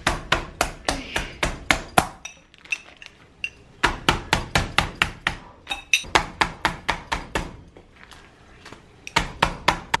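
Bottom of a drinking glass pounding raw chicken breasts through a plastic bag on a countertop, to flatten and tenderize them so they cook evenly. The blows come three to four a second in three runs, with short pauses between.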